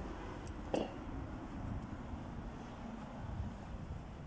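Steady low outdoor city background rumble from a street at night, with one sharp click a little under a second in.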